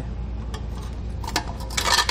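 Metal scraping and clinking as the steel backing plate of an electric trailer brake assembly is worked against the axle flange while its mounting bolts are fitted: a light click about half a second in, then a short burst of scrapes and clicks near the end.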